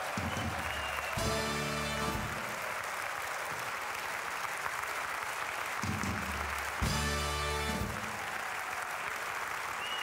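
Audience applause in a large hall with two short band fanfare chords, each about a second long: a carnival Tusch, one sounding about a second in and another about seven seconds in.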